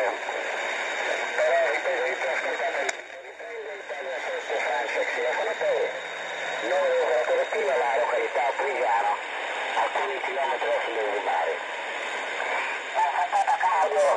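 Single-sideband voice on the 80-metre amateur band, received in lower sideband through a software-defined radio. A distant operator talks in a thin, narrow voice over a steady hiss of band noise.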